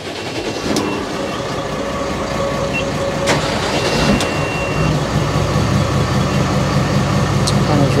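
Twin FPT NEF 400 six-cylinder common-rail marine diesels being started by key and coming up to idle. The low engine note builds and grows stronger about five seconds in, with a click and a short electronic beep partway through.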